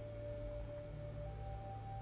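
Soft ambient meditation music under a guided relaxation: a long held pure tone, like a singing bowl, fades out and a slightly higher one comes in about a second in, over a low steady drone.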